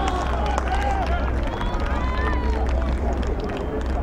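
Scattered shouts and calls from players and spectators on a rugby pitch just after a try has been scored, with several voices rising and falling in pitch, over a steady low rumble.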